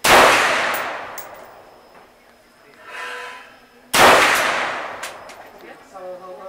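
Two single shots from an M16 rifle about four seconds apart, each followed by a long fading ring and echo.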